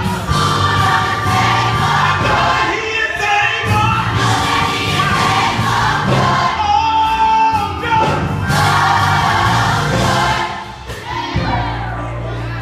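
Children's choir singing, with one high note held for about a second around seven seconds in; the singing falls away briefly near the end and carries on more quietly.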